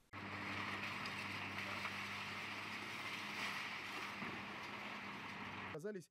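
Diesel engine of a demolition excavator running steadily, a constant low hum under a wide rushing noise as its grab works in the rubble. The sound cuts in suddenly at the start and stops just before the end.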